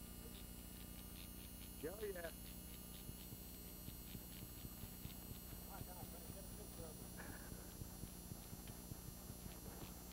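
A steady low hum carries scattered light, irregular clicks and faint talk. A man says "okay" about two seconds in, and fainter voices come later.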